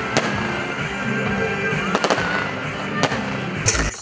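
Aerial fireworks bursting, with several sharp bangs about a second apart and a quick cluster near the end, over a steady background of music.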